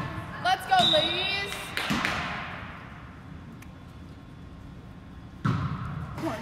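Players' voices calling out in a reverberant gymnasium, with a few sharp ball thuds in the first two seconds. After a quieter stretch, a sudden loud thud about five and a half seconds in as a volleyball is struck to start a rally.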